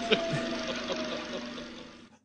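A steady drone with a slowly falling tone and a few short voice sounds near the start, fading out steadily and cutting to silence right at the end.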